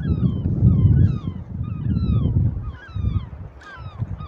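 Birds calling: many short calls, each falling in pitch, following one another in quick succession, over a low rumble.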